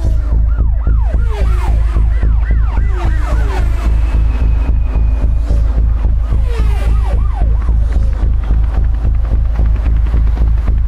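Electronic dance music with heavy bass and a fast, steady pulse of about four beats a second. Over it, synth glides swoop up and down in pitch like a siren, then stop about three-quarters of the way through.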